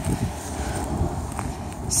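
Footsteps on a gravel driveway: uneven low thuds and a faint crunch as the person filming walks along.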